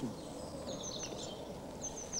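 Outdoor ambience with a bird chirping in short, high calls, about half a second in and again near the end.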